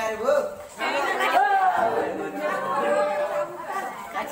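Overlapping chatter of students' voices in a large, echoing classroom, dipping briefly about a second in.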